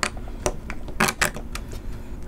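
Small hard plastic clicks and taps as a GoPro action camera is fitted onto a neck mount's plastic adapter: a click at the start, another about half a second in, and a quick cluster about a second in.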